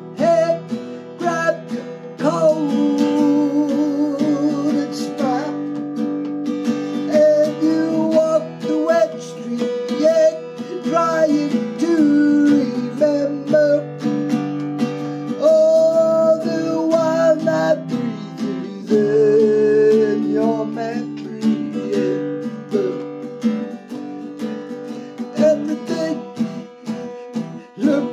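Acoustic guitar strummed in steady chords, with a man singing long, wavering held notes over it; the strum strokes stand out more near the end.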